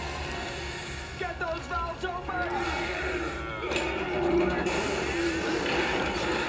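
Cartoon soundtrack playing on a television: music with voices mixed in.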